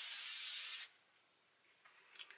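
One pump of an L'Oreal Infallible 3-Second Setting Mist bottle spraying an extremely fine mist: a single steady hiss of just under a second that cuts off sharply.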